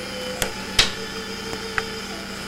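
Steady low hum with a held higher tone, broken by three short sharp clicks: two within the first second and one near the end.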